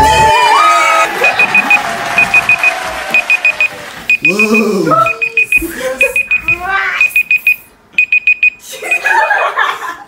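Phone countdown timer alarm going off as the time runs out: groups of four quick high beeps repeating about once a second.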